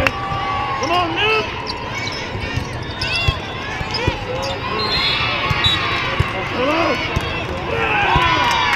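A volleyball is bounced on the sport-court floor several times in a large echoing hall. Players and spectators talk around it, and a sharp hit near the end marks the serve.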